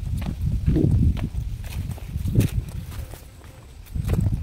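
Footsteps on a stone-slab path through dry grass: irregular steps with sharp clicks over a low rumble, easing off shortly before the end.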